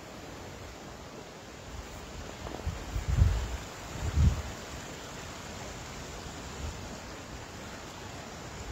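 Small forest creek running with a steady hiss, and two low rumbling bumps on the microphone about three and four seconds in.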